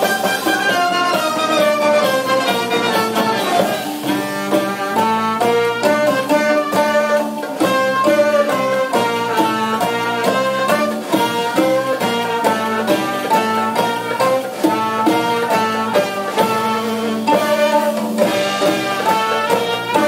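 A live ensemble plays Middle Eastern-flavoured jazz: a clarinet melody out front over plucked oud and bowed violin, with a sustained low note held underneath.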